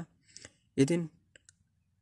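A pause in a narrating voice: one short spoken word about a second in, followed by a few faint clicks.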